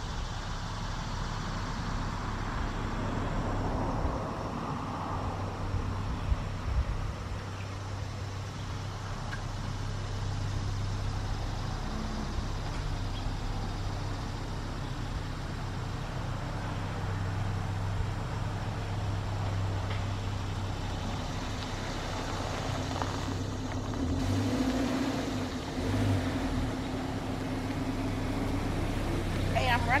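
Steady low hum of a motor vehicle engine running nearby, with traffic noise, growing a little denser about three-quarters of the way in.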